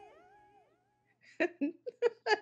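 The last held, wavering note of a pop song fades out within about half a second, played back over a computer. After a brief silence, short bursts of laughter begin near the end.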